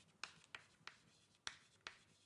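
Faint writing on a lecture board: about five sharp, irregular taps and strokes in two seconds as expressions are written out.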